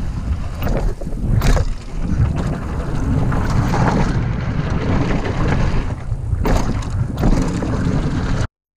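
Wind rushing over an action camera's microphone on a fast mountain-bike descent, with the steady rumble of the bike rolling over the trail. A few sharp knocks break through, one about a second and a half in and two more near the end.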